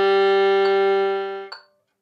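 Violin playing one long, steady bowed note on the open G string, a single straight bow stroke that stops about a second and a half in, followed by silence.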